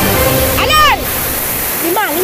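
Rushing water of a river rapid, with a high shout that rises and falls about half a second in and another short call near the end. Background music with a bass line plays under it and drops out in the middle.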